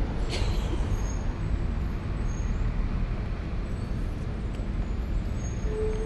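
Steady low outdoor background rumble, with a few faint brief high tones now and then.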